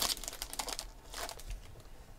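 Foil trading-card pack wrapper crinkling as it is pulled open and handled. There is a dense run of crackles in the first second and a shorter cluster a little past the middle, then it fades.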